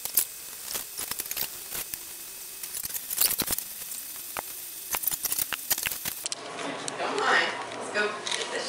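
Spoon scraping and tapping as tomato sauce is spread over stretched pizza dough on a wooden peel: a run of small clicks and scrapes for the first six seconds or so, then voices.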